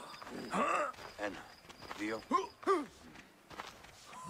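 Men's short shouts and exclamations from video-game characters at wrestling practice: about five brief calls in quick succession, each rising and falling in pitch.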